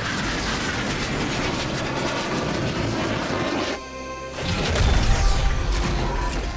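Orchestral score under dense film sound effects. There is a crashing, clattering mechanical noise for the first few seconds, then a heavy deep boom from about four and a half seconds in as a giant armoured robot lands on the ground.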